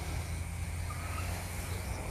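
Steady low background rumble with no speech, and a brief faint high note about a second in.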